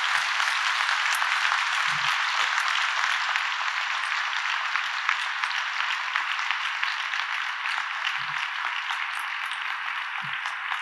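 A large audience applauding steadily, a dense patter of many hands clapping that slowly tapers off.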